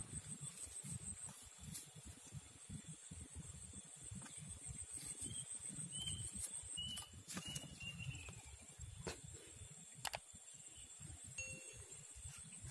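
Riverbank ambience: wind buffeting the microphone as a fluttering low rumble, under a steady high insect drone. About halfway through, a bird gives a few short chirps.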